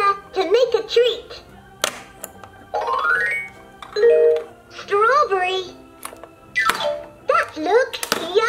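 A LeapFrog Scoop & Learn Ice Cream Cart toy playing its recorded sing-song voice over a backing tune, with a rising tone about three seconds in. Sharp plastic clicks come from the toy scoop twice.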